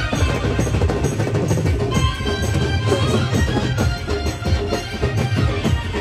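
Loud live folk music with a fast, steady drum beat and a melody over it.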